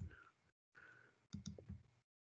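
Near silence broken by a quick run of three or four faint clicks about one and a half seconds in: a computer mouse and keyboard being worked while code is edited.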